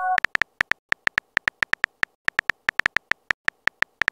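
Virtual-keyboard typing clicks from a texting app, short sharp ticks in an irregular run of about six to eight a second as a message is typed out letter by letter. The tail of a message-received chime ends right at the start.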